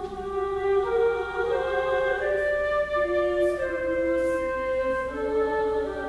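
A flute playing slow, held notes with a choir singing, several parts sounding at once and moving from note to note.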